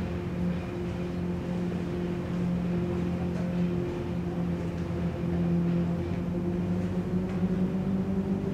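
Background music: a low, sustained drone holding a steady chord, which shifts about six seconds in.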